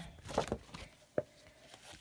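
Handling of a packaged scrapbook paper kit: a short rustle of the paper and its packaging, then a single sharp tap a little over a second in.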